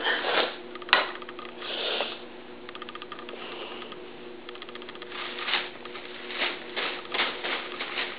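A cat digging and scratching at something as if burrowing: soft irregular scratching and rustling with short runs of quick clicking, and one sharp click about a second in, over a faint steady hum.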